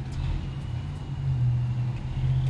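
A steady low mechanical hum with a faint thin whistle of water escaping at the backflow test kit, which begins about a third of a second in. The test kit is leaking at the differential pressure gauge.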